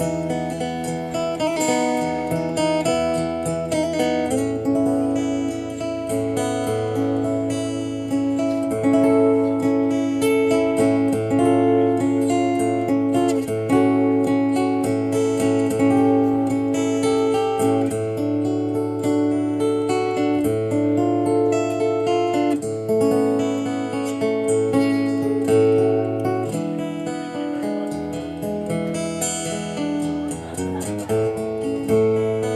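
Solo acoustic guitar playing sustained chords that change every few seconds, with no singing.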